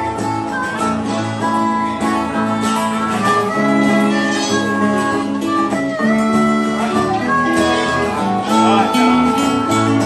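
Live country band playing an instrumental break: a harmonica, cupped to a hand-held microphone, plays a solo with held and bent notes over strummed acoustic guitars and bass.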